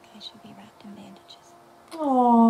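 Soft, hushed speech close to a whisper, in short broken phrases, over a faint steady held note.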